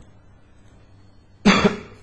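A man's short, breathy vocal burst about one and a half seconds in, two quick pulses close together, after a quiet pause with only room tone.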